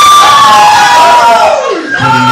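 A man singing one long, high held note into a microphone, the pitch sliding down near the end, with the crowd cheering behind it.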